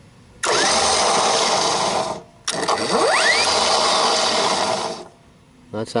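Warn 12,000 lb electric winch motor switched on twice, running for about one and a half then two and a half seconds. Each run starts with a rising whine as the motor spins up and cuts off abruptly.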